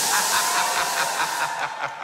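Stage spark fountains going off in a loud, steady rushing hiss that fades away after about a second and a half.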